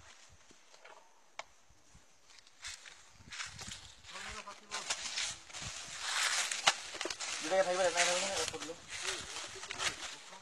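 A low, quiet stretch, then from about three seconds in an indistinct person's voice among scattered clicks and rustling noise, loudest near the eight-second mark.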